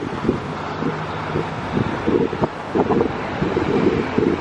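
Wind buffeting the microphone in irregular gusts, over the steady sound of street traffic.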